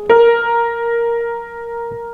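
Grand piano sounding a single B-flat, struck once and left to ring and slowly fade: the fourth (eleventh) of an F blues scale.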